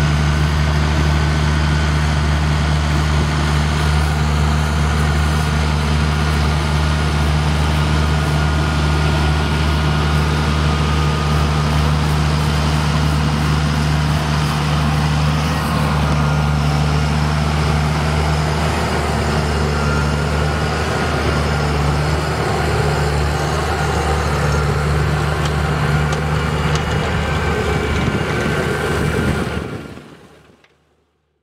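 Fendt 820 Vario tractor's six-cylinder diesel engine running steadily under load while spreading slurry with a tanker and trailing-hose boom. The sound fades out at the very end.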